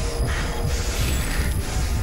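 Dramatic TV soundtrack: a heavy low rumble with a mechanical pulse of hissing bursts, about two a second, under the music score.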